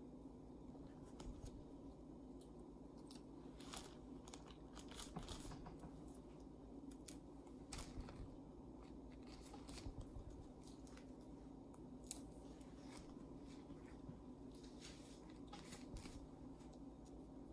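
Faint handling noises: soft rustling of plastic sheeting and small scattered clicks and crackles as adhesive reinforcement rings are peeled and pressed onto a plastic parachute, over a steady low room hum.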